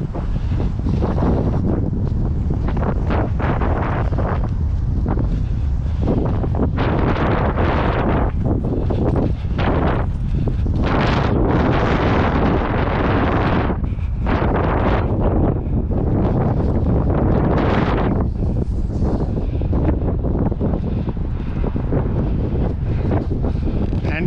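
Strong wind buffeting a body-worn action camera's microphone: a steady low rumble with irregular louder gusts every few seconds.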